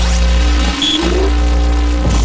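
An engine sound effect for a cartoon machine. It runs loudly and steadily, with a rising rev in the first second.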